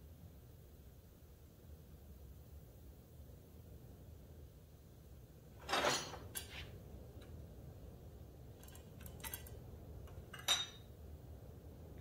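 Small steel door-handle regulator parts being set down and handled on a steel workbench: one clank about six seconds in, a few light clicks, then a sharp ringing clink shortly before the end. A low steady hum lies under it all.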